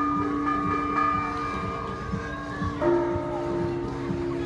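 Church tower bells ringing, their tones hanging on after each stroke; a fresh, louder stroke near the end brings in a slightly higher note.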